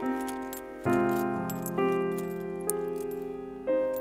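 Slow piano music, a new chord struck about every second and left to ring out. Over it comes light metallic jingling from coins being handled.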